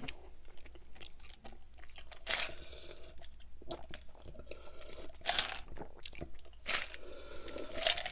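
Close-miked drinking: a few distinct swallowing gulps from a plastic cup, a second or more apart, with quieter mouth and handling noises between.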